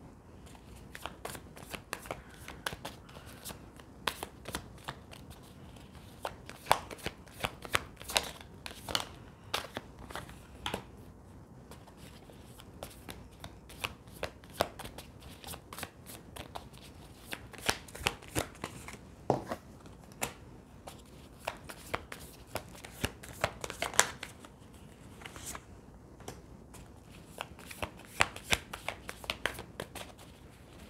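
Tarot cards being handled and laid out on a table: a long run of irregular sharp card snaps and light taps, some coming in quick clusters.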